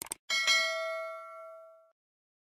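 Two quick click sound effects, then a bell ding that rings and fades out over about a second and a half: the notification-bell chime of an animated subscribe button.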